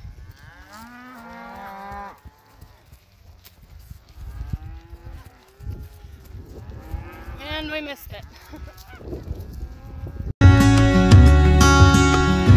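Cattle mooing, several long calls one after another from the herd, over a low rumble. About ten seconds in, loud guitar music cuts in suddenly.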